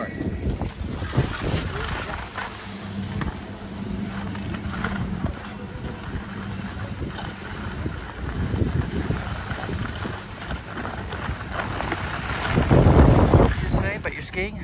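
Wind rushing over the microphone and skis hissing and scraping over groomed snow during a downhill run, swelling louder near the end.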